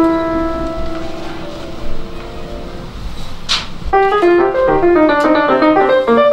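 Piano playing: a held chord slowly dies away, then about four seconds in a fast run of notes begins.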